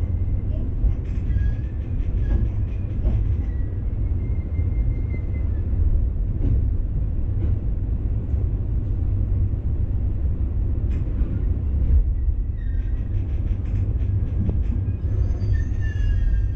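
Electric commuter train running, heard from inside the driver's cab: a steady low rumble with a faint high whine, and a few sharp clicks as the wheels pass over points. Near the end, high ringing tones come in over the rumble.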